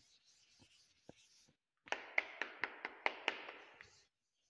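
A board duster rubbing briskly back and forth across a chalkboard, a scraping noise with about four sharp strokes a second, beginning about halfway through after a few faint knocks.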